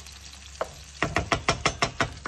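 Wooden spoon stirring thick fava bean purée in a nonstick frying pan, with garlic and oil sizzling underneath. About a second in comes a quick run of about seven sharp scrapes and taps of the spoon in the pan.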